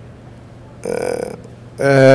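A short throat sound from a man close to a handheld microphone, about half a second long, about a second in. It comes between spoken lines.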